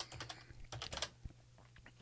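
Faint typing on a computer keyboard: a quick irregular run of key clicks in the first second, thinning out after, over a low steady electrical hum.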